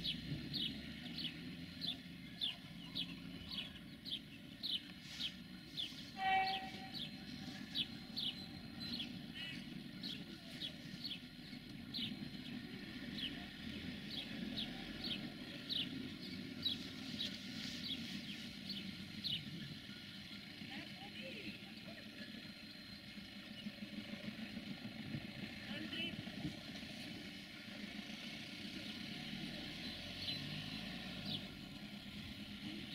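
Distant diesel multiple unit running with a low, steady rumble while a small bird repeats a short high chirp about twice a second. A single short tone sounds once about six seconds in, the loudest moment.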